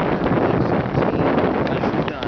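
Wind blowing across the camera's microphone: a steady, loud, noisy rush with no distinct events.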